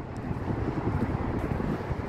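Wind buffeting a phone microphone: a steady, uneven low rumble from a strong breeze across an open bridge deck.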